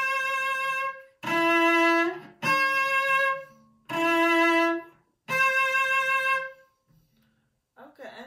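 Cello bowed in a slow repeated shift, alternating a lower note and a higher note of about a second each, the move made three times in a row. This is a shift practised by repetition, with the note to be shifted to heard in the ear before moving. The last note fades out about two-thirds of the way in.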